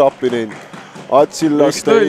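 Excited TV commentator's voice reacting to a goal: short exclamations whose pitch swoops up and down, with brief gaps between them.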